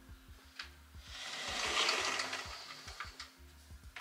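A mirrored sliding wardrobe door rolling along its track as it is pulled closed, a swell of rushing noise lasting about two seconds. A few light clicks from the clothes rail come before it, over faint background music.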